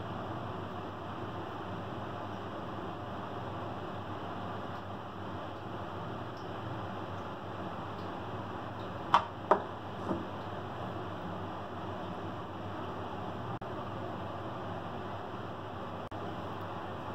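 Steady low background hum while thick chocolate cream is poured through a metal strainer, with three short sharp clinks of metal kitchenware about nine to ten seconds in.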